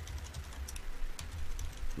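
Typing on a computer keyboard: irregular key clicks as a text message is typed out.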